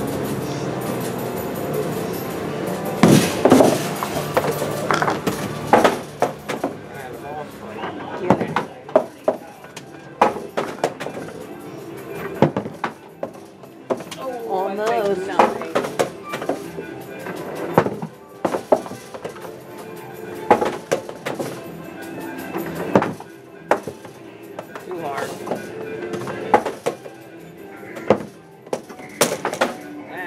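Arcade din: irregular sharp knocks and clacks of skee-ball balls hitting and rolling in the lanes, over game-machine music and voices. A warbling tone comes in about halfway through.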